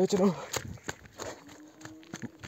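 Footsteps of a person walking in chappals (sandals) over a dry dirt path and grass: a few uneven steps.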